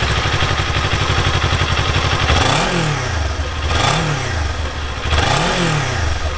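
2019 Kawasaki Ninja 400's 399 cc parallel-twin engine idling just after a warm start, then blipped three times, each rev rising and falling about a second and a half apart. Nothing real loud; it sounds about like a sewing machine.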